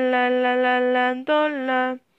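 A woman singing two long held notes of the trumpet line. The first lasts about a second; the second dips slightly in pitch and breaks off near the end.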